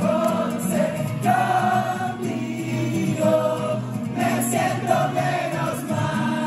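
Live song: a man singing held notes over a strummed acoustic guitar.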